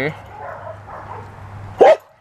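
A dog gives one short, loud bark near the end, after a quieter stretch.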